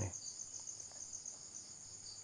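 Faint crickets chirping: a rapid, evenly pulsed high-pitched trill.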